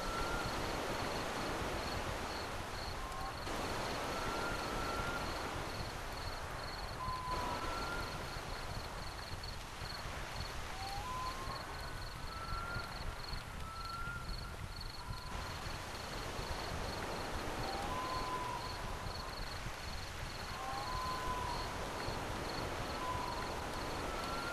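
Faint high-pitched chirping that pulses evenly throughout, with short whistled upward chirps every second or two, over a steady background hiss.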